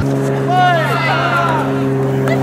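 Girls' shouted calls from a field hockey game over a steady, low mechanical hum that starts suddenly at the beginning.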